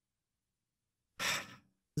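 Dead silence, then about a second in a short, sharp intake of breath, just before speech begins.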